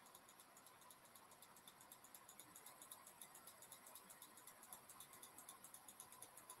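Near silence: faint room tone with a rapid, even, faint ticking.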